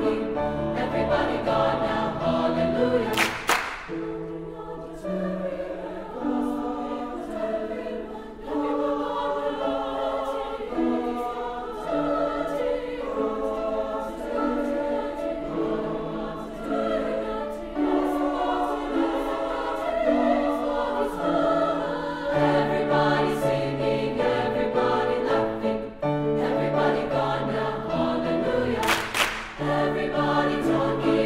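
Mixed high-school choir singing in several parts, the chords shifting every second or so. Two brief hissing accents cut through, about three seconds in and again near the end.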